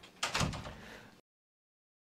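A brief scrape and knock lasting about a second, then the sound cuts off suddenly to dead silence.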